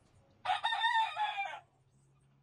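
A rooster crowing once, a single call lasting a little over a second.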